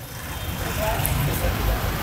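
Street traffic noise: a low vehicle rumble with hiss that rises over the first half second and then holds steady.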